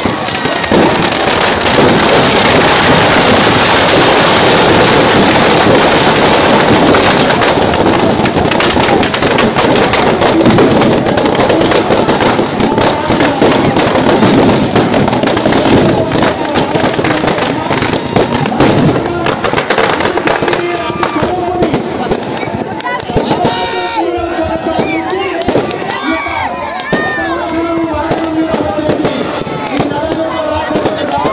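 Dense, rapid crackling and banging of firecrackers packed inside a burning effigy, loud and continuous for about twenty seconds. Then it thins out to scattered cracks, and the voices of onlookers come through.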